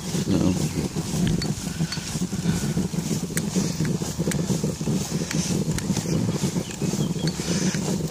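Steady low rolling rumble of a recumbent trike riding along a wet road, with a few light ticks through it.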